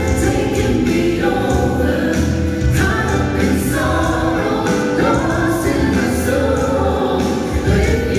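A vocal trio, one woman and two men, singing together into handheld microphones over accompanying music, heard through the hall's sound system.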